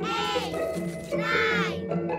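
A child's voice counting aloud in Italian, drawing each number out in a sing-song. Two numbers are called, about a second apart, over light children's background music.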